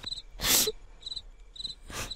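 Cricket chirping: short pulsed chirps about twice a second. About half a second in there is a loud breathy rush of noise.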